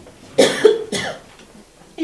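A woman coughing three times in quick succession, about half a second in.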